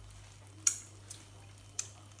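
Strawberry jam bubbling faintly in a pan on a ceramic hob over a steady low hum, with two sharp clicks about a second apart.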